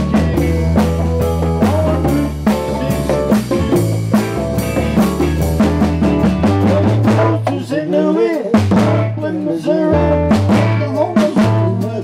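A live blues-rock band playing: hollow-body electric guitar, conga drums and drum kit over a bass line, with a steady beat.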